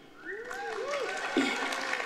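Audience applause with cheering and whooping voices, swelling up just after the start and holding steady.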